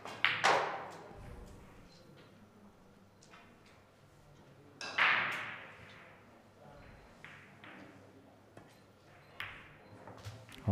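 Sharp clicks of pool balls and cue tip on a heyball table, each with a brief ringing tail. The loudest come about half a second in and about five seconds in, with fainter clicks later as a shot is played and the cue ball strikes the red.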